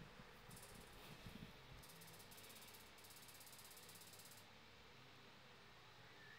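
Near silence: room tone, with a faint, fast, high-pitched ticking for a few seconds in the middle.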